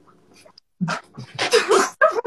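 Young men breaking into loud laughter and shouts in noisy bursts from about a second in, with a sliding, squeal-like pitch near the middle.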